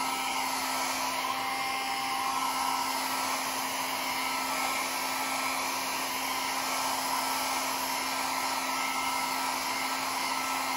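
A handheld electric hot-air tool running steadily, blowing across wet alcohol ink on paper to push the ink around. It makes an even whoosh over a steady low hum.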